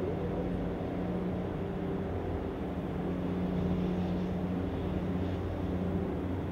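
Steady low machinery drone with a deep hum, its lower note growing a little stronger about halfway through.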